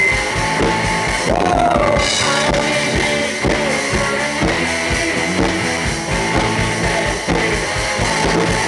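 Live rock band playing: electric guitars over a drum kit keeping a steady beat, loud throughout.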